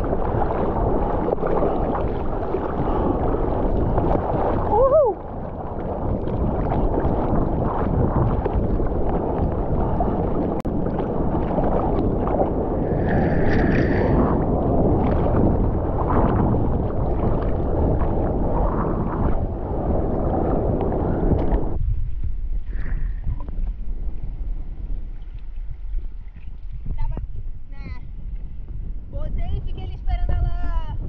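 Seawater sloshing and gurgling against a bodyboard-mounted action camera sitting at the waterline, with wind on the microphone. The water noise drops off suddenly about two-thirds of the way through, leaving a quieter wash.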